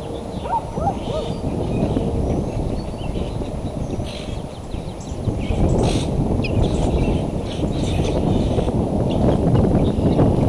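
Steady rumbling wind noise on an outdoor nest microphone, with faint scattered songbird chirps above it and a few short rising peeps in the first second or so.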